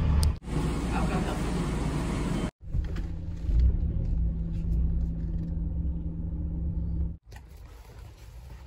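Car engine running, heard from inside the cabin as a steady low rumble with a faint hum, cut abruptly into short segments; near the end it gives way to a much quieter outdoor background.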